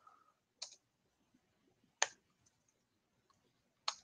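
Three separate computer keyboard keystrokes, sharp single clicks spaced one to two seconds apart, the middle one the loudest, as an address is edited in a text editor.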